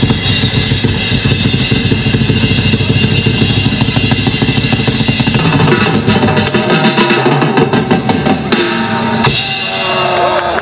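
Metal band playing live: electric guitars and bass over a drum kit, heavy in the low end. In the second half the low end thins and sharp drum strikes come to the fore, and the music stops about a second before the end.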